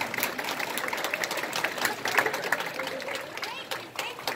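Scattered audience clapping, a quick irregular patter of hand claps, over murmuring voices.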